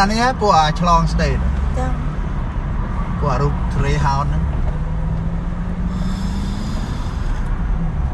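Steady low rumble of a car's engine and road noise heard from inside the cabin in slow-moving traffic, with a steady low hum in the second half. Voices talk briefly in the first second and again about three to four seconds in.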